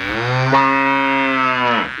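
A bull's single long, steady moo that drops in pitch as it ends, after nearly two seconds.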